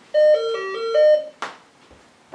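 Electronic doorbell chime playing a short tune of about six notes that lasts just over a second, followed by a single click.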